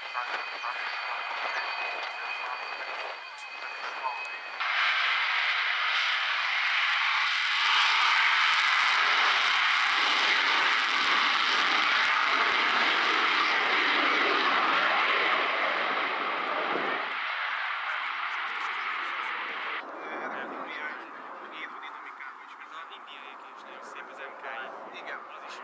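Su-27UB's twin AL-31F turbofan engines whining at low power, then suddenly much louder about four and a half seconds in as they run up for the takeoff roll. The loud, steady jet noise holds through the takeoff and climb-out, then falls away near the end as the aircraft moves off.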